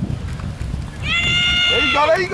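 Wind rumbling on the microphone, then about a second in a spectator's long, high-pitched yell held on one pitch as the play unfolds, with a second voice shouting near the end.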